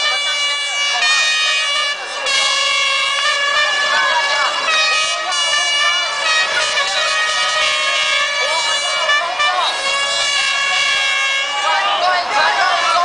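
Many air horns blown at once by a crowd, several steady blaring tones overlapping and changing in blocks every few seconds, with shouting voices underneath.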